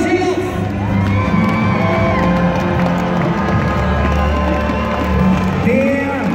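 Large outdoor crowd cheering and shouting, with music playing over it.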